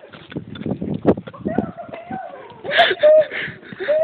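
Heavy, wheezing breathing of people running, with rapid footfalls and a couple of short yells, the loudest about three seconds in.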